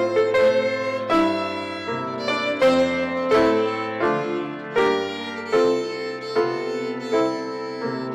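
Violin playing a melody with piano accompaniment, the piano's notes landing about once a second.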